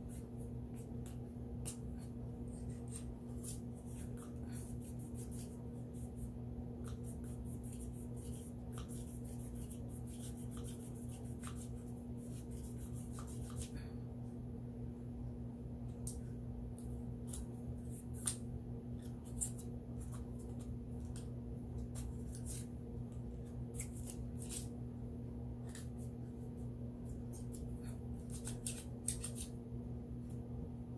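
Small clicks, scrapes and rustles of fingers working a cloth patch along a thin plastic gun-cleaning rod, scattered irregularly over a steady low hum.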